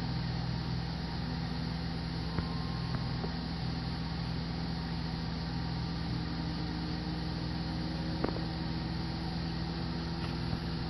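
Steady hum of the aircraft's powered-up avionics and their cooling fans, with a few faint clicks.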